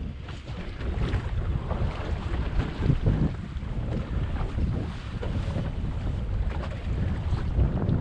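Wind buffeting the microphone in an uneven rumble, over water lapping against the hull of a small drifting boat on open water.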